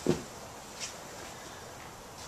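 A short thump right at the start as the removed trunk floor panel is handled, then a fainter knock just under a second in, over quiet background hiss.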